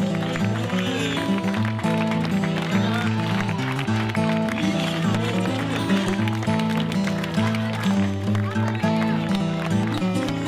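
Music with a repeating bass line and chords plays throughout, over a crowd of voices and clapping.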